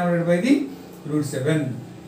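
A man's voice speaking, with a short pause about half a second in.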